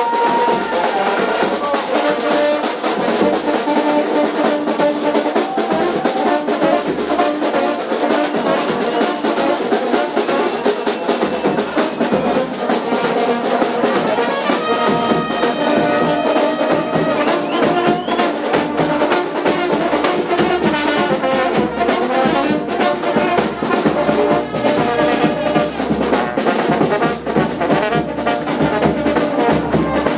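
Serbian-style brass band played live at close range: horns and trumpets holding and trading melody lines over a steady drum beat, loud throughout.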